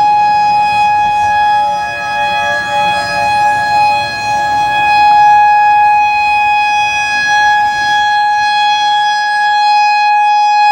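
Federal Signal EOWS-612 electronic outdoor warning siren sounding a steady, unwavering tone for a tornado-drill test. Its rotating six-horn array makes the level swell and dip slightly as it turns.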